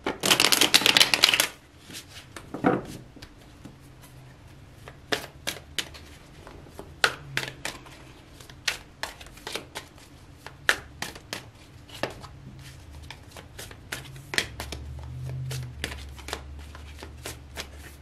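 A tarot deck being riffle-shuffled: a dense, loud flutter of cards for the first second and a half, then a single snap, followed by many separate light card clicks as the cards are worked through by hand.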